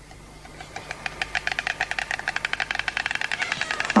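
White stork clattering its bill: a rapid, even rattle of many clicks a second that swells over the first second and runs until just before the end.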